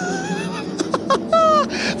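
A man laughing, with a drawn-out excited exclamation, over the steady drone of GT3 race cars running on the circuit.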